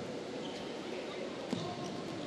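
Indoor volleyball rally: a single sharp ball hit about one and a half seconds in, over the hall's steady background noise and faint voices.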